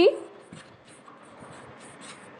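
Chalk writing on a chalkboard: a run of short, irregular scratching strokes as a word is written.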